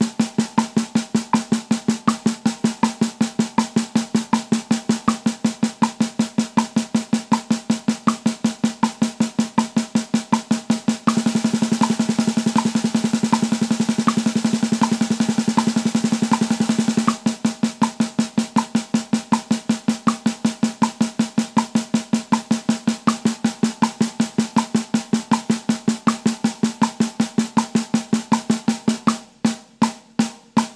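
Snare drum played with sticks in even single strokes at 80 BPM, the stroke rate doubling from sixteenth notes to thirty-second notes. The thirty-seconds run as an almost continuous roll for about six seconds in the middle, then the strokes drop back to sixteenths and thin out to eighth notes near the end. A light tick falls on every beat underneath.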